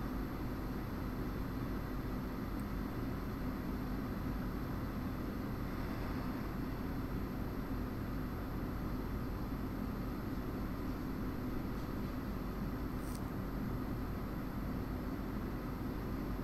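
Steady hiss of a fan or blower with a faint low hum under it, and a single faint click about three-quarters of the way through.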